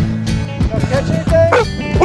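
A yellow Labrador retriever whining in a few short cries that rise and fall in pitch, over steady background music.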